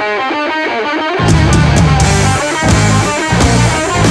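Hardcore punk song in an instrumental passage. An electric guitar riff of quick notes plays alone for about a second, then the bass and drums with cymbals come back in under it.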